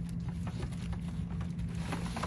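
Plastic comic-book bags rustling and shuffling as comics are sorted by hand in a cardboard box, over a steady low hum.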